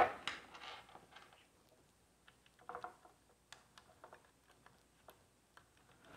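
Sparse light clicks and taps of hands handling a plastic electrical box and its cover, with a sharper click at the start and a small cluster of clicks about three seconds in.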